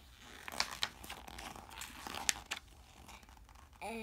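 Pages of a picture book being turned by hand: paper rustling and crinkling with a few sharp flicks, the sharpest about two seconds in.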